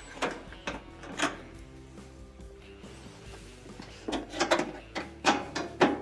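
Soft background music, with a scattering of clicks and knocks from a screwdriver and hands working at the screws under a stainless steel stove console panel: a few near the start and a denser run in the last two seconds.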